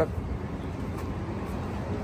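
Steady low rumble of road traffic, with no distinct knocks or clicks.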